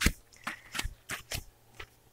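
Scattered light clicks and rustles of handling, about half a dozen, as gloved hands move a sanding block.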